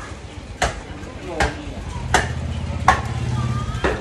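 Five sharp knocks, about one every three-quarters of a second, with a low steady hum joining about halfway through.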